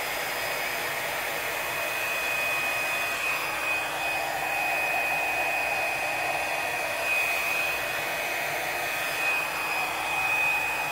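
Handheld hair dryer running steadily, blowing wet acrylic pour paint across a canvas: a continuous rush of air with a thin, high, steady whine over it.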